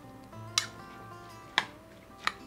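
A fork stirring coleslaw in a bowl, clicking against the bowl twice. Quiet background music plays underneath.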